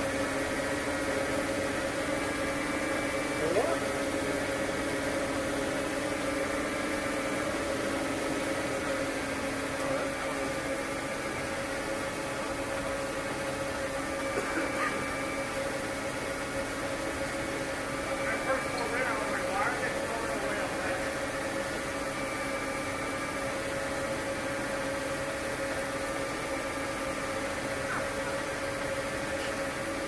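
Steady mechanical hum from nearby machinery, holding several constant pitches at an even level, with a few short rising squeaks about 4, 15 and 19 seconds in.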